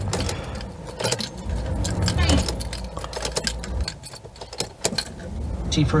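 Car keys jangling on their ring, with repeated clicks as the ignition key of a Ford Focus diesel is turned on and off several times. This is done to make the fuel pump build up diesel pressure after running low on fuel left the engine stuck below 2000 rpm.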